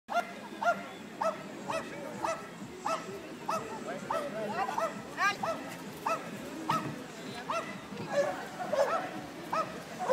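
Pyrenean Shepherd barking in a steady run of short, high-pitched barks, about one bark every half second to two-thirds of a second, without a break.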